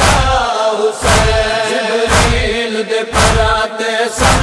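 Noha backing chorus of voices chanting sustained, drawn-out notes, over a deep thumping beat about once a second.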